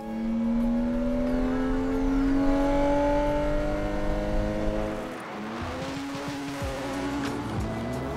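Porsche Cayman rally car's engine pulling hard under acceleration, its pitch climbing steadily for about five seconds. It then dips briefly at an upshift and climbs again in the next gear.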